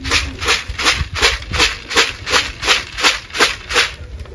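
Grain pigeon feed rattling inside a lidded plastic bucket shaken back and forth by hand, close to three shakes a second in an even rhythm.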